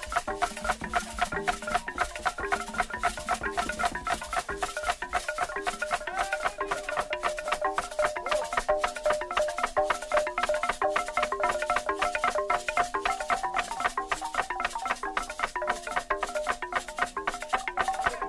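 Traditional Cameroonian percussion music: a fast, even beat of sharp strikes, about four a second, with shakers and a short pitched figure repeating over it.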